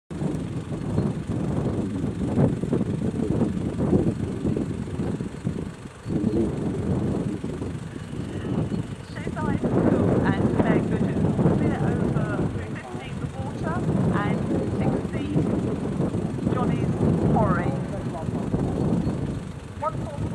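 A loud, gusting low rumble, typical of wind buffeting the microphone, with people's voices faintly in the background from about halfway in.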